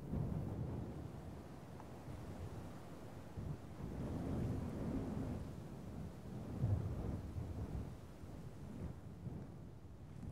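A deep rolling rumble that starts suddenly, swells and eases in slow waves, and is loudest a little before seven seconds in.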